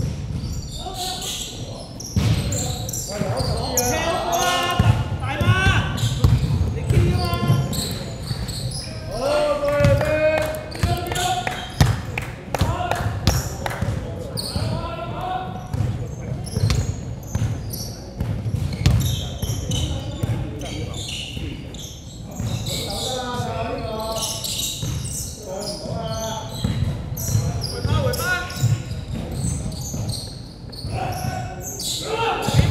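A basketball bouncing on a hardwood gym floor during live play, repeated sharp knocks echoing in a large hall, with players' voices calling out now and then.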